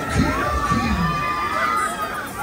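Riders screaming and shouting on a swinging fairground thrill ride: several drawn-out high screams, some sliding in pitch, over crowd noise, with a low thump near the start.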